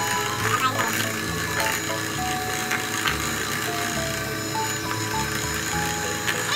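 Background music, with an electric hand mixer whirring and rattling as its beaters work an egg mixture in a stainless steel bowl.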